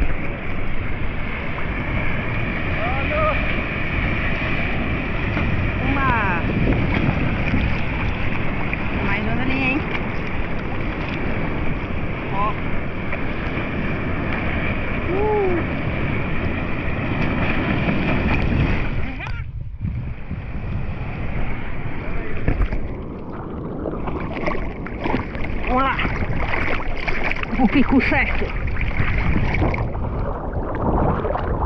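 Seawater sloshing and lapping around an action camera held at the surface, with wind on the microphone. About two-thirds of the way in, the sound goes dull for about a second as the camera dips under the water.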